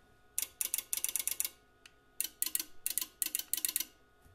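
Relays in an Auxx-Lift storage-lift controller clicking in two rapid runs of about a second each, as the remote's up and down buttons are pressed. The relay clicking signals that the remote control has been learned by the controller.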